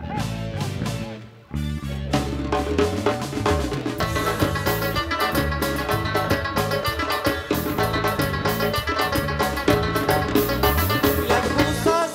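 Band playing the instrumental introduction of an Afghan pop song on drum kit, bass and guitar. After a brief break about a second and a half in, the full band comes in, and cymbals join about four seconds in.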